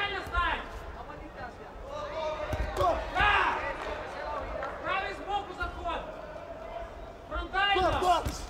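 Men's voices shouting calls from ringside during a boxing bout, loudest about three seconds in and again near the end, with dull thuds from the boxers in the ring between the shouts.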